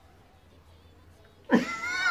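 A cat meow from an anime's soundtrack, used as a scene-transition sound: a single loud call that starts about a second and a half in.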